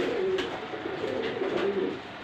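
Domestic pigeons cooing: low, wavering coos, with a few light clicks.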